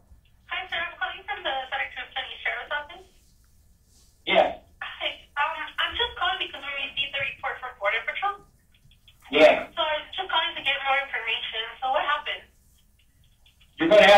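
Recorded emergency phone call playing back: voices over a telephone line with a thin, narrow phone sound, in three stretches of talk with short pauses between.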